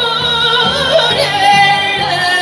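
Amplified dance music with a steady beat, and a woman singing held, wavering notes into a microphone over it.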